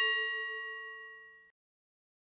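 The dying ring of a bell-like chime sound effect: several clear steady tones fading out and gone by a little past halfway.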